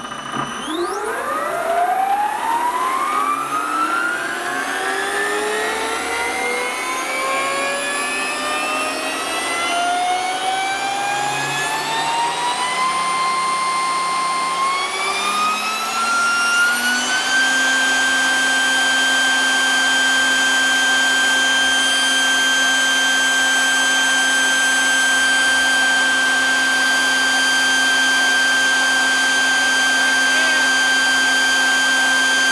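Large-scale RC helicopter's drive spooling up on the bench: a whine that rises steadily in pitch for about seventeen seconds, pausing briefly partway, then holds at one steady high pitch.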